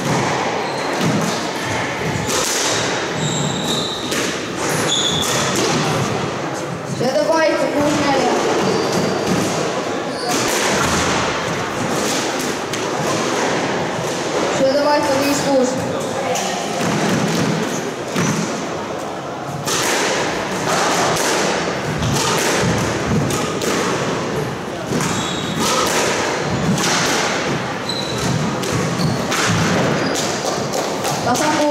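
Squash ball impacts: the ball struck by rackets and thudding off the court walls again and again.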